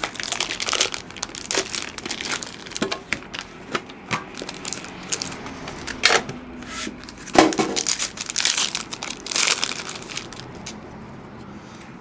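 Plastic wrapping of a pack of baseball cards being torn open and crinkled in the hands, an irregular run of crackles and sharp rustles.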